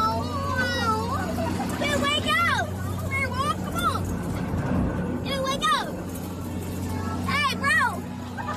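People's voices on an amusement ride, calling out in several short yells that sweep up and down in pitch, over a steady low machine hum.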